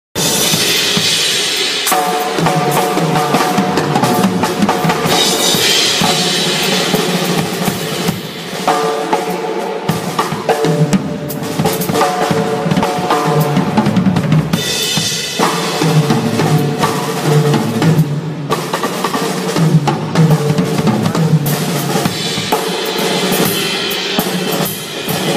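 Odery acoustic drum kit played with sticks in a busy, continuous drum solo: snare, toms and bass drum under a steady wash of cymbals, with fast rolls and fills.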